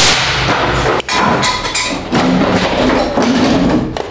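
Homemade pneumatic cannon, its tank pumped to full pressure, firing a 12-gauge slug: a sudden loud blast, then several seconds of loud rushing noise with a second jolt about a second in.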